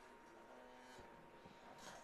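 Near silence: faint background noise with a faint steady tone.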